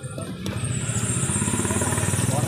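A motorcycle engine running close by, with a fast, even low pulse, growing louder about half a second in.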